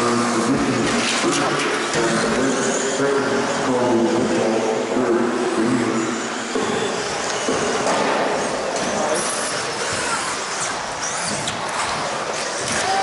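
Electric 1/10-scale RC buggies racing on an indoor carpet track: high-pitched motor whines rising and falling as they accelerate and brake, over tyre noise and the echo of a large hall. A murmur of voices runs underneath, with a steadier pitched hum in the first half.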